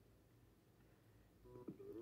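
Near silence: room tone, with faint short electronic tones coming in near the end.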